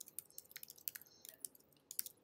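Light, irregular keystrokes on a computer keyboard while a message is typed.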